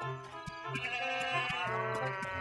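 Cartoon background music with a pulsing bass line, joined about a second in by a long, wavering sheep bleat.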